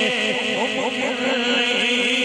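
A man's voice chanting a long, held note through a loudspeaker system, with quick sliding pitch ornaments in the first second.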